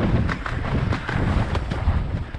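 Wind buffeting a helmet-mounted camera's microphone as a horse canters, with its hoofbeats coming through as a run of dull thuds under the wind.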